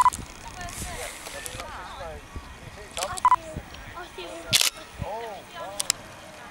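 Indistinct voices of people talking nearby, with a few sharp clicks and two short beeps, one at the start and one about three seconds in.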